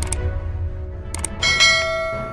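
Outro sound effects: a low rumble and two short clicks, then about a second and a half in a bright bell chime whose several tones ring on and slowly fade.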